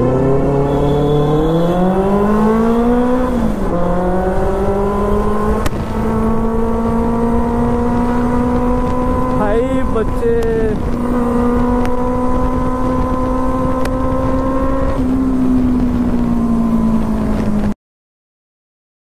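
Benelli 600i's inline-four engine rising in revs as the bike accelerates, dropping briefly at a gearshift about three and a half seconds in, then running at near-steady revs while cruising. The sound cuts off suddenly just before the end.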